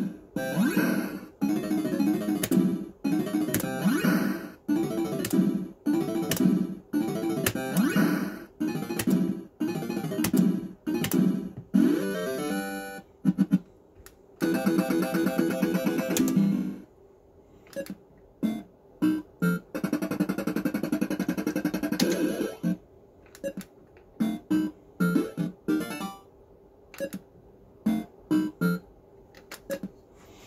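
Action Note fruit machine playing its electronic tunes and sound effects: a pulsing run of synthesized notes for the first twelve seconds or so, a held chord a few seconds later, then short, separated bleeps and chimes.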